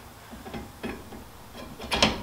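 Steel DOM tie rod tube being worked onto a weld-in bung: a few light metal knocks and scrapes, then a sharp metallic click just before the end as the tube goes on.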